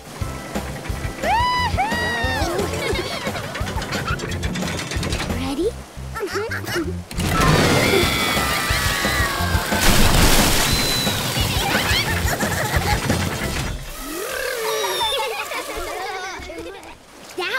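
Cartoon soundtrack of a log flume ride: upbeat music with a steady beat, high excited cries from the riders, and a long water splash about seven seconds in as the log boat runs down the chute.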